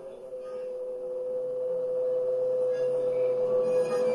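A single sustained electronic tone from an experimental sound sculpture, held at one steady pitch and slowly swelling in loudness, with fainter steady tones beneath it.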